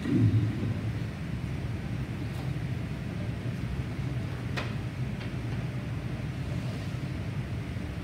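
Steady low rumble of room noise, with a brief low thump at the very start and a single sharp click about four and a half seconds in.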